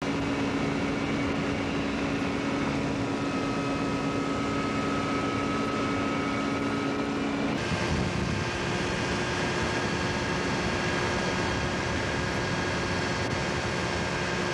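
Engine of a two-seat motorised hang glider (ultralight trike) running steadily in flight, with a hum and rushing air noise heard from on board. Its pitch steps up abruptly about halfway through, where the footage cuts to another shot.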